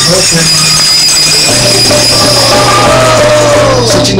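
A man's voice singing a long held note that slides down in pitch toward the end, over a steady low drone.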